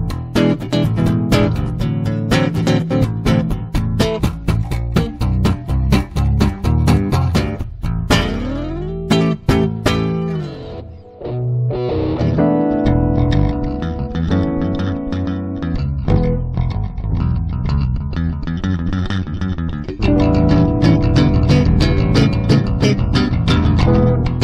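Six-string electric bass played in a quick run of plucked notes, with a sweep in pitch and a short dip near the middle; after it, a semi-hollow electric guitar joins with held chords over the bass, a little louder toward the end.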